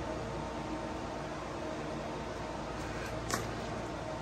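Electric pet drying cage's fans blowing steadily, with the heater off and only the fans drawing power, about 100 W. A brief click a little over three seconds in.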